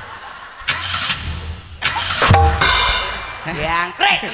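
A man imitating a motorbike engine with his voice into a handheld microphone: a noisy sputter about a second in, then a buzzing rev in the second half.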